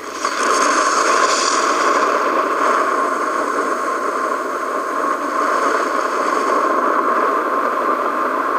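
A loud, steady rushing noise, a documentary sound effect for the Big Bang fireball. It swells up in the first half second and then holds.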